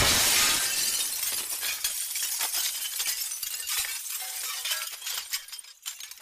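Cartoon glass-shattering crash sound effect: a loud smash, then falling shards clinking and trailing off over about five seconds.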